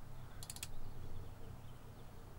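Three or four quick, sharp clicks from a computer mouse button or keys about half a second in, as the software update is started, over a faint steady low hum.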